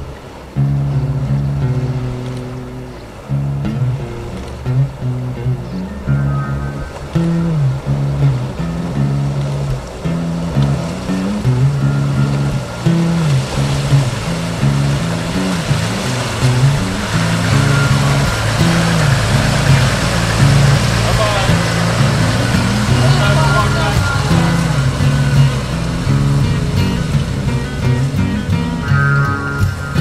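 Acoustic guitar music. From about halfway, a rising wash of engine noise and water splashing sits beneath it as a safari 4x4 drives through a flooded track.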